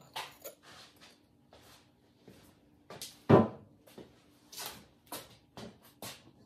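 Handling noises of fired pottery being picked up from inside an electric kiln: short scrapes and clinks against the kiln, with one louder thump a little past the middle.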